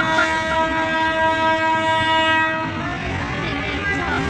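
Train horn sounding one long steady note, heard from inside the moving train, cutting off a little over halfway through. Under it runs the steady low noise of the train travelling on the rails.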